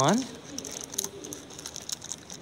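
Clear plastic packaging of a small capsule toy crinkling and clicking faintly as it is turned over in the hands.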